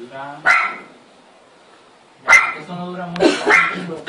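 A dog barking: a sharp bark about half a second in, a pause, then further barks from a little after two seconds in.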